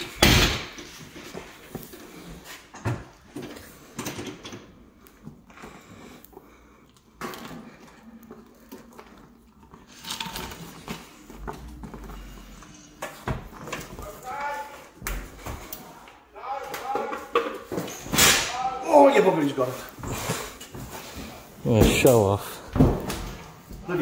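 A sharp bang right at the start, then scattered knocks and thuds as a heavy coil of cable is wrestled up off the ground beside a steel door. Men's voices without clear words, loudest in the last few seconds.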